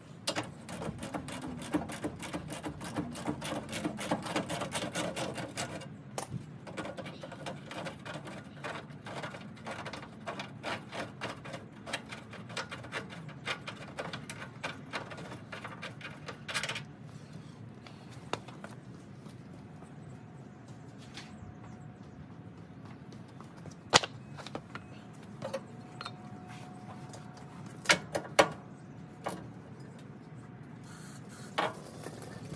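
Hand ratchet clicking in rapid runs while backing out the front bumper bolts, for about the first seventeen seconds. After that only scattered clicks and a few sharp metal knocks.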